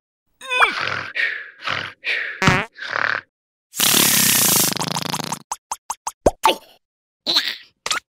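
Cartoon vocal effects: a larva grunting and squeaking as it strains, then a long hissing fart blast about halfway through, followed by a quick run of small bubble pops.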